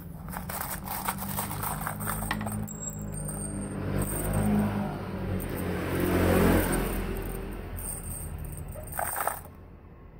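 Hardened steel concrete nails clinking and rattling against each other as a hand rummages in their cardboard box and jostles a handful in the palm, loudest in the middle.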